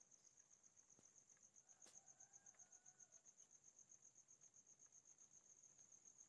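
Near silence, with a faint, steady, high-pitched chirping pulsing rapidly, like a cricket.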